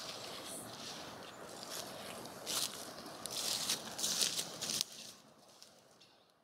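Footsteps crunching through dry leaf litter, a run of crisp steps from about halfway in that fades out near the end, over a steady outdoor hiss.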